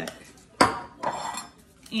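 A sharp metal clank about half a second in, followed by a lighter ringing clatter, as metal kitchenware is set down on the kitchen counter.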